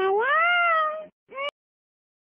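A cat meowing: one long meow that rises and then slowly falls, then a short meow that cuts off abruptly.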